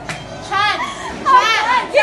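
High-pitched voices of a group of young people, with two shrill rising-and-falling exclamations, the first about half a second in and a longer one about a second and a half in.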